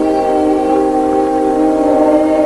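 Choir voices holding a long, steady chord in slow sacred chant.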